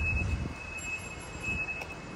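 Low background rumble with a faint, steady high-pitched tone running through it; no distinct event.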